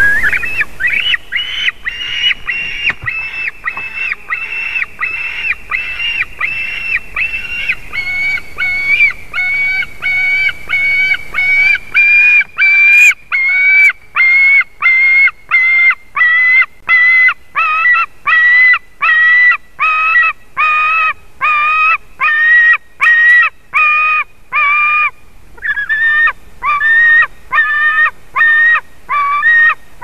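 Young eagle crying over and over, loud calls about two a second, with a short break about five seconds before the end.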